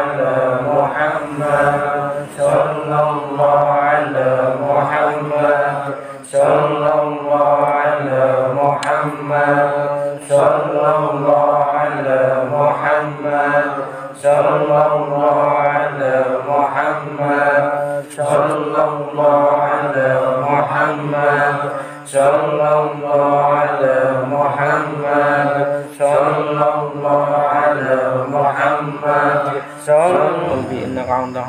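A group of men chanting Islamic dzikir in unison, repeating one short phrase over and over, with a brief breath break about every four seconds. The chant stops near the end.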